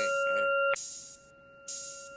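Hip-hop beat with no vocals over it: a steady synth tone that cuts off suddenly under a second in, and short bursts of high hiss.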